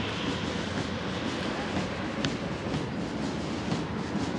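Column of armoured military vehicles driving past: a steady rumble of engines and running gear.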